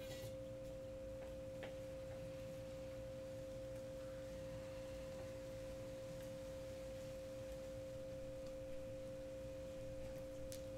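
A steady pure drone tone, unchanging and faint, with weaker steady tones below and above it: a sustained background tone track.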